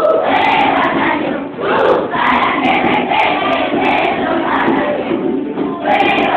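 A group of schoolchildren singing a Venezuelan Christmas song together, phrase after phrase, with a short breath about a second and a half in.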